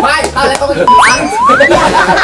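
Cartoon 'boing' sound effect, two quick rising pitch slides about a second in, over background music and people talking.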